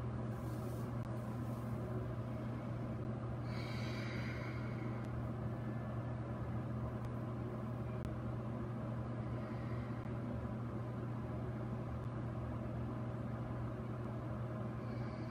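Steady low hum of background room noise, with a brief hiss about four seconds in.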